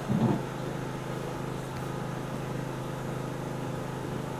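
A steady low hum, with a brief vocal sound right at the start.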